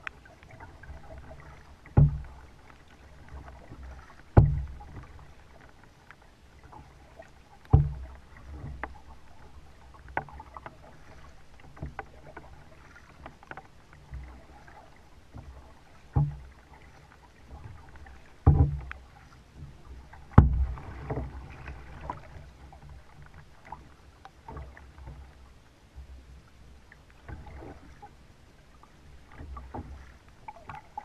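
Kayak paddling: a double-bladed paddle dipping and dripping, with the water's splash and trickle around a plastic kayak. Half a dozen loud, hollow knocks fall at uneven intervals, the paddle or the boat's motion bumping the hull.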